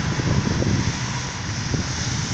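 Wind rumbling irregularly on a phone's microphone, over a faint steady low hum of road traffic.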